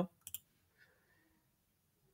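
Two quick clicks of a computer mouse, a double-click, then near silence.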